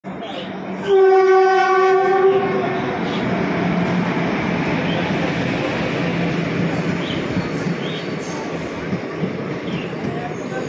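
An Indian Railways train horn sounds once, about a second in, for roughly two seconds. It is followed by the steady rumble of sleeper coaches rolling along the platform.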